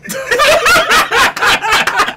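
Men laughing loudly together, the laughter breaking out suddenly and going on in choppy bursts.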